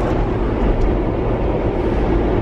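Steady low rumble of a car driving, heard from inside the cabin: engine and road noise with no change in pitch.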